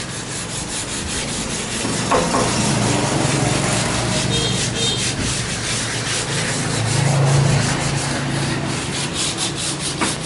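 Wood being sanded in a workshop: a steady rasping rub with a low hum underneath that grows louder about seven seconds in.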